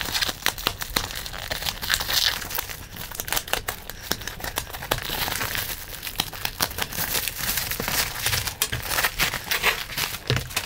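Plastic postal mailer and its packing tape being torn open by hand, with continuous crinkling and crackling of plastic film and bubble wrap as the parcel is pulled out.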